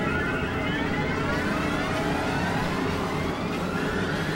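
Dense experimental synthesizer drone: many overlapping tones gliding up and down over a thick, noisy low rumble, at an even level throughout.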